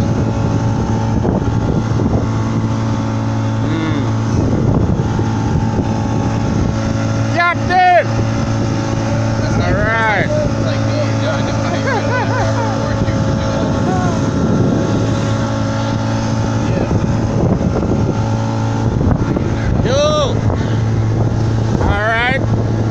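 Motorboat engine running steadily at cruising speed, with water rushing past the open wooden hull.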